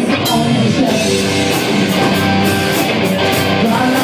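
Live rock band playing an instrumental passage: electric guitars over a drum kit keeping a steady beat, with regular cymbal strokes.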